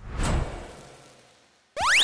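Cartoon transition sound effects: a whoosh that fades away over about a second and a half, then a fast rising zip near the end.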